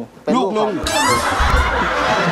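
A man's short spoken line, then a studio audience laughing from about a second in, many voices together and continuing loudly.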